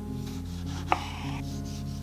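Chef's knife slicing a tomato on a wooden cutting board, with one sharp tap of the blade on the board about a second in. Background music with sustained notes plays throughout.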